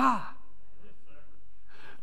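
Speech only: a man's voice exclaiming "hi-ya" at the very start, followed by a pause without words.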